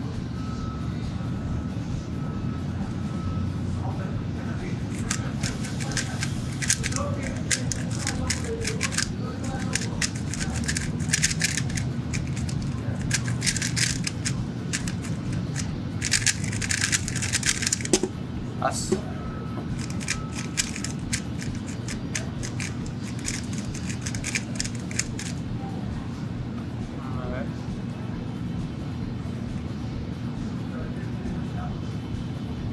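MoYu HuaMeng YS3M 3x3 speedcube, the standard non-maglev version, turned fast during a timed speedsolve: rapid runs of plastic clicking from the layers, broken by a few short pauses, for about twenty seconds.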